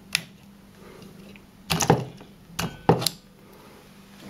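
Plastic clicks and knocks as an 18650 lithium cell is pulled out of the bay of a 3D-printed camera battery grip and handled: one click just after the start, then a cluster of knocks a little under two seconds in and two more about a second later.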